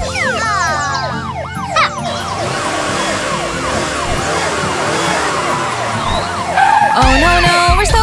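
Cartoon siren sound effect wailing in quick up-and-down pitch sweeps, mixed with a rushing whoosh and background music; the song resumes near the end.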